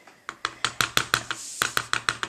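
Quick run of light taps and clicks, about eight a second, as fingertips press a foam-taped paper die cut down onto a cardstock card front.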